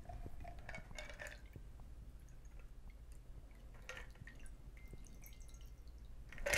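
Stirred cocktail poured through a strainer from an ice-filled mixing glass into a martini glass: a faint trickle and drip of liquid into the glass.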